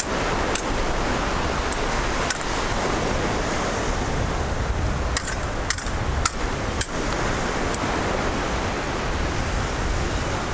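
Steady rushing noise of surf washing up the beach, heaviest in the low end, with a few sharp clicks, most of them bunched between about five and seven seconds in.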